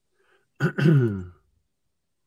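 A man clearing his throat once, about half a second in: a short rasp that slides down in pitch.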